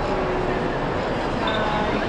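A steady, loud rumbling noise with no clear events, and faint voices of people nearby.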